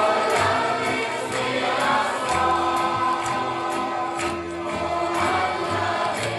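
Choir singing a gospel hymn with instrumental accompaniment, on an early-1970s LP recording, with a steady beat of about two strikes a second.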